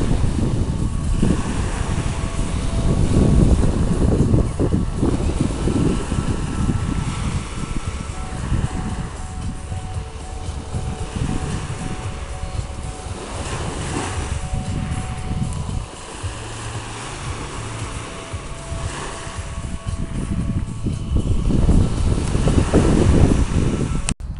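Small waves breaking and washing on a shingle beach, heard under gusting wind on the microphone as a steady rushing noise with a heavy low rumble.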